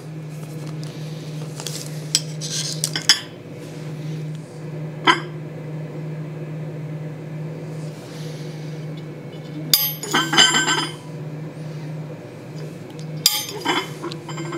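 Steel plates clinking and scraping on a steel anvil as they are shifted and laid on each other: a few sharp single taps, then a ringing metal clatter about ten seconds in and again near the end, over a steady low hum.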